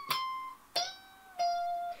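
Electric guitar playing a slow line of single high notes with string bends, high up the neck. One note rings for about half a second, then two lower notes follow, about half a second each, the first bent slightly upward.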